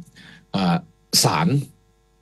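A man speaking Thai with a hesitant, drawn-out 'er' before a single word, broken into short bursts.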